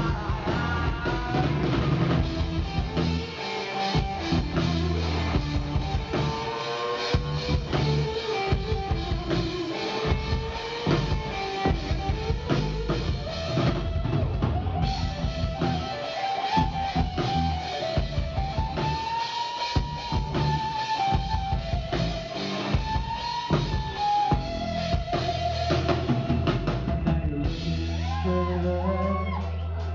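Live rock band playing: drum kit with bass drum, electric guitars and bass guitar, with a wavering melodic line over the top.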